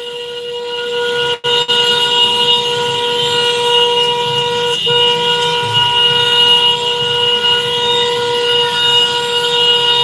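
A vehicle horn held down in one long, steady note, broken only by a brief cut-out near the start and a short gap midway, in a honking motorcade.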